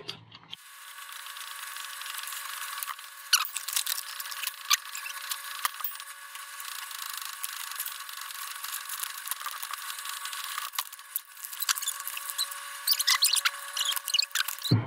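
Scattered small clicks, taps and scrapes from handling small electronic parts, a toggle switch and a plastic project box, over a steady thin high whine.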